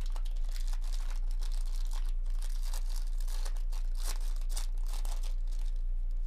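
Foil wrapper of a 2024 Topps Series 2 baseball-card jumbo pack crinkling and tearing as it is ripped open by hand, a dense run of quick, irregular crackles, over a steady low electrical hum.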